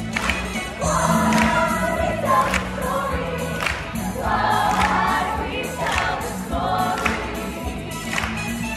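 A group of young voices singing a musical-theatre number together over music, with a strong beat about once a second.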